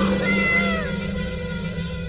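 A single cat meow, one short call that rises and then falls away, under a second long, over a held musical chord that slowly fades.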